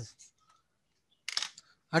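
A man's lecturing voice trails off at the start, followed by a pause of near quiet with one brief soft noise a little past the middle, just before he speaks again.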